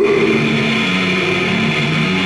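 Death metal band playing live: heavily distorted electric guitars and bass holding a steady, low droning riff, loud and coarse through a camcorder microphone in the crowd.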